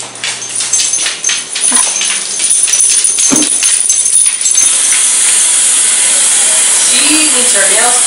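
Light metallic clinking and jingling, then a kitchen tap turns on about five seconds in and runs steadily, filling a dog's water bowl at the sink.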